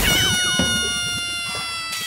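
A single long pitched sound, struck suddenly, held for about two seconds while it slowly sinks in pitch, with a couple of quick downward slides in its first half-second.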